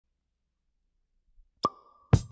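Near silence, then, a little past the middle, a single sharp percussion hit that rings on in one steady tone: the pickup note that opens the song, played from a vinyl record.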